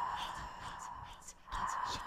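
Soft, breathy whispering voice with hissy sibilant strokes, breaking off briefly for a moment a little past halfway.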